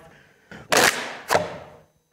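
A crushed plastic drinks bottle being blown back into shape by mouth: one hard rush of breath into the bottle, with a sharp pop about halfway through as the dented plastic springs back out.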